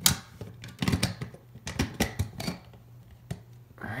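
Plastic clicks and knocks of a fire-alarm heat detector head (FST-851R) being handled and twisted back onto its mounting base, a quick irregular string of sharp clicks with the loudest at the very start.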